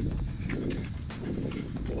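A runner's heavy breathing and footfalls, close to a handheld camera's microphone, over a low rumble of movement on the mic. The breathing is already up early in the run.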